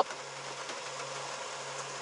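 Steady low electrical hum with an even hiss underneath, from a van's 12-volt solar power setup, with its 1000-watt inverter running a refrigerator, hot plate and laptop.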